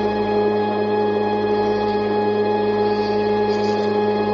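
A steady musical drone holding one unchanging pitch with its overtones, unbroken and without any strokes or beats.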